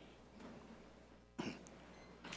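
A single short cough or throat-clear about one and a half seconds in, against a quiet room.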